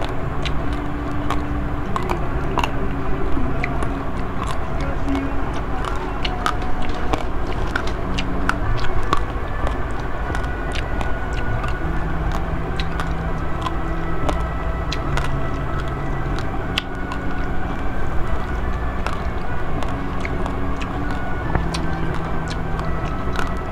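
Close-up crunching of uncooked basmati rice grains mixed with Milo powder being chewed, many short sharp cracks all through. Under it runs a steady low rumble with a hum.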